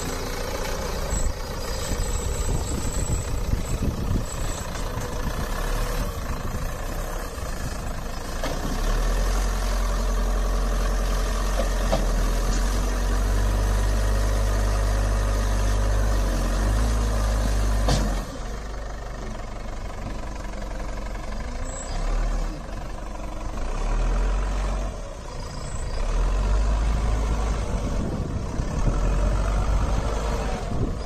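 Diesel engine of a Caterpillar 424B backhoe loader running as the machine drives and loads dirt. Its low rumble swells louder and heavier for long stretches, about a third of the way in and again near the end, and drops suddenly partway through.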